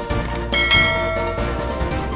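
Background music with a bright bell chime sound effect just over half a second in, ringing out for under a second. Two short clicks come just before the chime.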